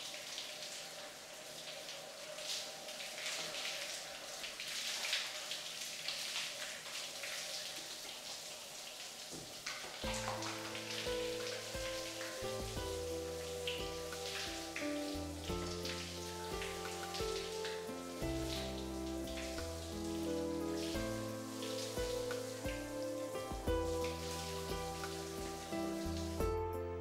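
Shower head spraying water in a steady hiss of falling water. About ten seconds in, background music with held notes comes in over the running water.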